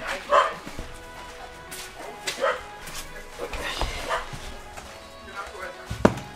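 A dog barking a few short times over faint background music.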